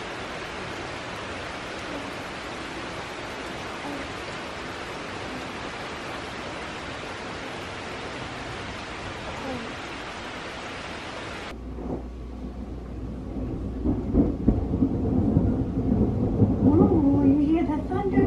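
Heavy, steady rain pouring down. About eleven seconds in, the rain sound cuts off and a low rumble of thunder builds, loudest near the end.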